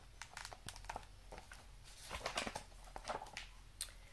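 Pages of a picture book being turned and handled: a string of soft paper rustles with small clicks and taps, a little louder around two seconds in.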